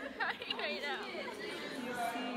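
Crowd chatter: several voices talking over one another at once.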